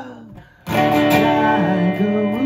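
A held sung note dies away into a brief lull. Then, about two-thirds of a second in, an acoustic guitar played through an amp comes in with a sharp strummed chord, and the strumming goes on with the chord ringing.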